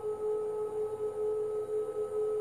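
Steady meditation drone: one held pitch with fainter higher overtones, unbroken and unchanging.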